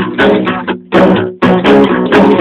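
Rock music: strummed guitar chords in a choppy, stop-start rhythm, with a short break just before the one-second mark.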